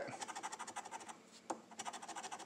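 A metal coin scratching the coating off a lottery scratch-off ticket in quick rapid strokes, with a brief pause and a single sharp tap past the middle.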